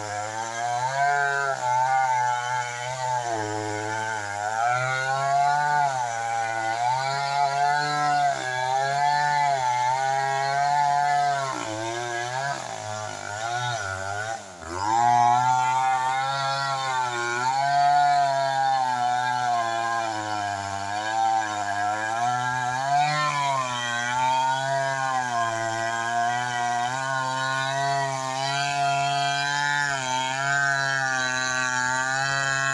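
A Stihl 070, a big two-stroke chainsaw, running under load as it cuts lengthwise into a waru (sea hibiscus) log, its engine note rising and falling as the chain bogs and frees in the cut. About halfway through it drops for a couple of seconds, then revs back up sharply.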